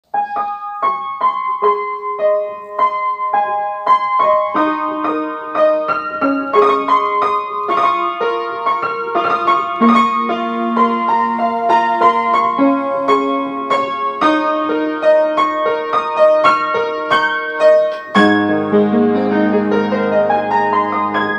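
Background piano music: a steady run of single struck notes, with lower, fuller notes coming in near the end.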